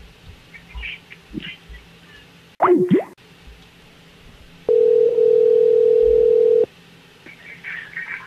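A telephone ringback tone on the line: one steady ring about two seconds long, heard while a call is placed and before the other end answers. Near the middle there is a short, loud sweeping sound just before it.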